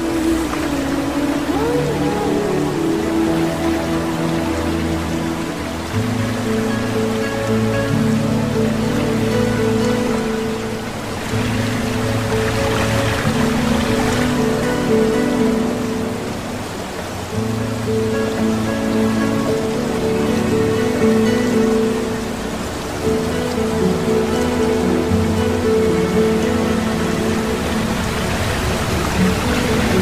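Background music: slow, sustained chords over held bass notes, changing every couple of seconds, with a steady hiss-like wash behind them.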